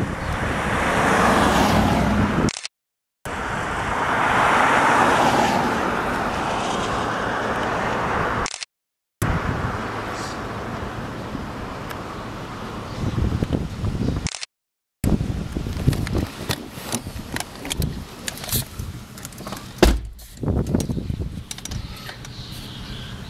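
Road traffic passing, the noise swelling and fading as vehicles go by, with abrupt breaks where the recording cuts. Over the last several seconds, irregular clicks and knocks of a handheld camera being handled and moved.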